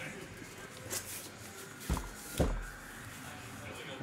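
Cardboard shipping case being handled and turned over on a table: light handling noise with a few dull knocks, the clearest two about two seconds in.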